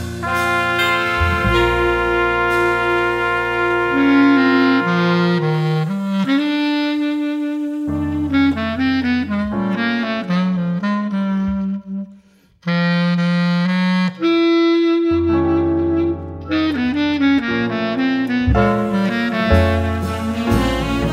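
A jazz band's saxophones and brass playing slow, sustained chords over low bass notes, with a short break about twelve seconds in before the horns come back in.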